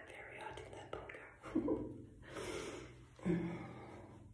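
A woman speaking softly, half whispering, with breaths between the words.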